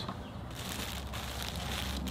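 Faint rustle of a plastic-bagged clothing item being lifted out of a cardboard box, over a low steady hum.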